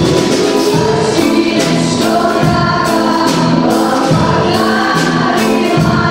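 Girls' school choir singing held notes in harmony, accompanied live by a small band of guitars, double bass, accordion and other plucked string instruments with a steady strummed beat.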